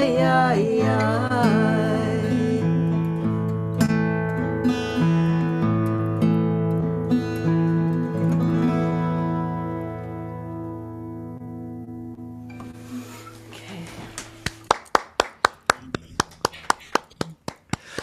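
Acoustic guitars ring out on a final chord after the last sung note about a second in, fading away slowly. In the last few seconds comes a run of sharp, irregular clicks or taps.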